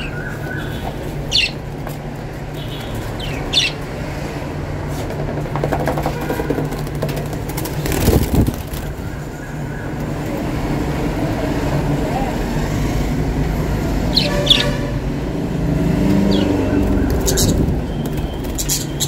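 Lovebirds giving a few short, high chirps while being moved from a cardboard box into a wire cage, with a rustling thump of the box about eight seconds in, over a steady low background rumble.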